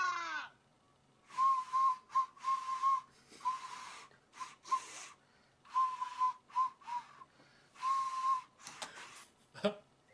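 A small plastic whistle blown through the nose: a run of short, breathy toots at one high pitch, some held about half a second, others very brief. A short knock comes near the end.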